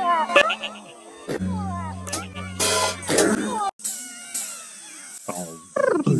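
A quick jumble of voice sounds and music cut close together, with a steady low buzz lasting about two seconds and an abrupt drop-out near the middle.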